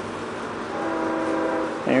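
A distant horn sounding one steady, level note for about a second in the middle, over steady outdoor background hiss.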